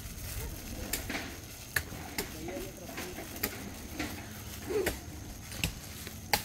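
Plastic candy bag crinkling as sweets are picked out of it by hand, with a sharp crackle every second or so, and faint voices in the background.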